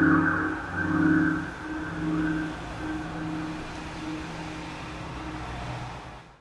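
Distorted electric guitar ringing out through effects as the song ends, its held low notes pulsing about once a second and slowly fading.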